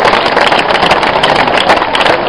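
Crowd applauding: many hands clapping in a dense, steady patter.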